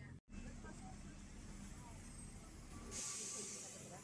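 Bus engine and cabin rumble, heard from inside the bus with a steady low hum. About three seconds in it cuts off abruptly and gives way to a short burst of hiss.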